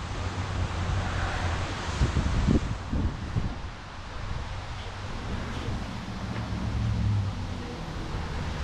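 Wind buffeting an outdoor camera microphone: a steady low rumble with a noisy haze, and a faint low hum joins in during the second half.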